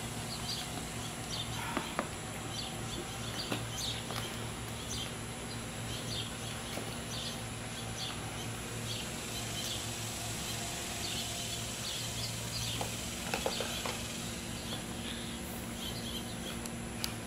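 Small birds chirping faintly and repeatedly over a steady low hum, which stops near the end, with a few soft clicks.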